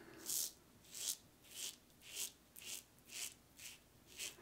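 Blackland Sabre safety razor scraping through lather and two days' stubble on the neck, in short strokes about two a second.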